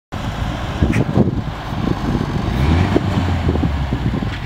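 Lifted four-wheel-drive rock crawler's engine running under load as it crawls over granite boulders, with a few short knocks. A low, steady engine drone sets in about halfway through.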